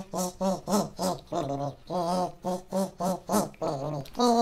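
A buzzy, nasal tune of short repeated notes, about three a second, mostly on one pitch with an occasional lower note.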